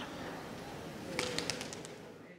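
Quiet background ambience: a steady faint hiss, with a few light clicks and a faint short low call a little past a second in.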